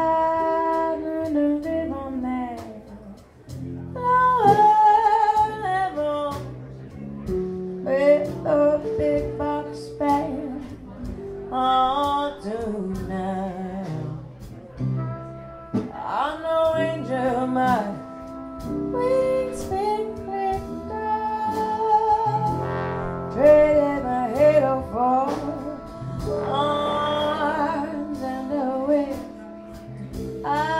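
A woman singing with a small traditional New Orleans jazz band. Sousaphone, guitar and drums play under her, and trumpet, clarinet and trombone join in with long held notes behind the voice.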